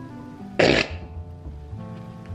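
Background music with held notes, and a single short cough about half a second in.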